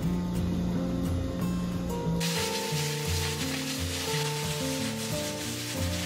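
Background music throughout; about two seconds in, a steady high hiss starts, steam hissing from pressure cookers on a gas stove.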